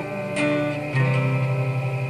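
Guitar strummed as song accompaniment, a short instrumental stretch between sung lines, with the chord changing about a second in.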